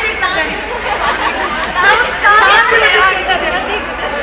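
Several people talking over one another: overlapping conversational chatter.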